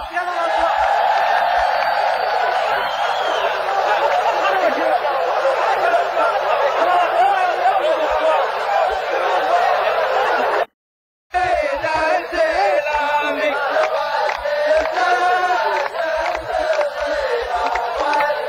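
A large chorus of men chanting a poetic verse together in the rows of a muhawara (sung poetic duel), many voices blended into one dense sound. The sound cuts out completely for about half a second near the middle, then the chant resumes with the sung lines standing out more clearly.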